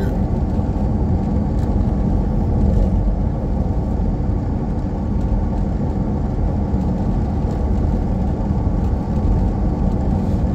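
Steady road and engine noise heard inside the cabin of a vehicle cruising along a paved highway, a constant low rumble with no changes.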